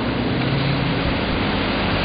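A car ploughing through deep floodwater on a street, a steady rush of water pushed aside and splashing off its front.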